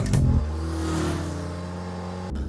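A car engine accelerating, its note rising slightly, with a whoosh that swells and fades about halfway through.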